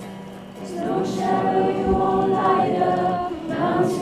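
Acoustic guitar playing, joined about a second in by a group of voices singing a worship song together.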